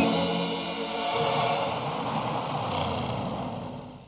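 Cartoon background music: a held chord that stops about a second in, giving way to a rushing noise that swells and then fades out near the end.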